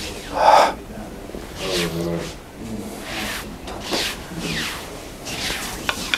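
Low, indistinct voices in short snatches, with one louder burst about half a second in and a single sharp knock just before the end.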